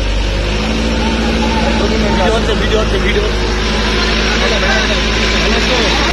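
Small truck's diesel engine running steadily, with voices in the background.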